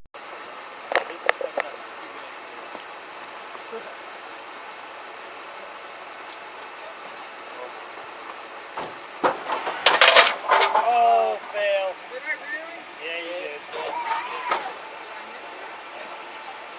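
An aluminium soda can crushed under the lowrider's body: a quick cluster of loud sharp cracks and crunches a little past halfway. Voices and laughter follow, with a few sharp clicks about a second in.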